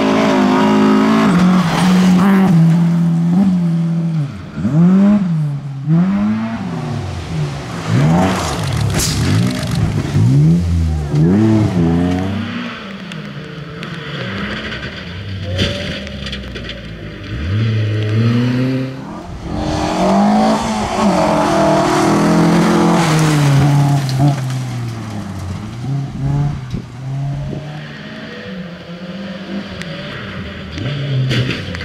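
Rally cars on a gravel stage passing one after another, their engines revving hard and dropping in pitch again and again through gear changes and lifts, with tyres sliding on the loose surface.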